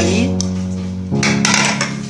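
Background music of plucked string notes over a held bass, moving to a new chord about a second in.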